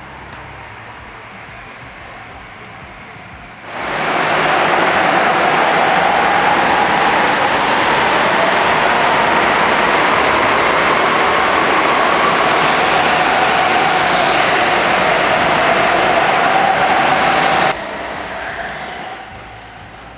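Go-karts running on an indoor kart track: a loud, steady engine-and-tyre noise with a faint wavering motor tone. It cuts in suddenly about four seconds in and stops abruptly near the end.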